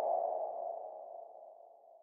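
Title-card sound effect: a sonar-like ping that rings on as one tone and fades away over about a second and a half.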